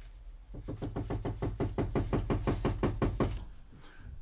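Fingertips rapidly patting primer into the skin of the face, a quick even run of about seven soft pats a second that lasts roughly three seconds.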